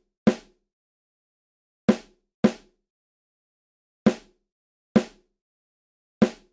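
Sampled acoustic snare drum (Logic Pro's Acoustic Snare D1 7 patch) played back from MIDI: five single hits, spaced unevenly, each dying away quickly into dead silence. Every note is set to velocity 100, so all the hits are the same loudness.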